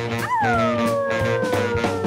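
A cartoon werewolf's wolf-like howl in a child's voice: one long call that rises sharply about a quarter second in, then slides slowly down in pitch, over children's dance music.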